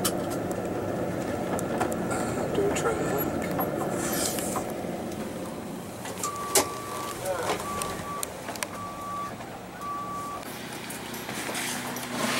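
Van running steadily, heard from inside the cabin, then about six seconds in four short, evenly spaced electronic beeps at one pitch.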